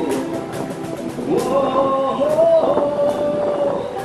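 A live Cantopop cover played by a busking band: a male voice sings through a microphone and small amplifier, joined about a second in and holding a long note midway, over strummed acoustic guitar and scattered cajon strokes.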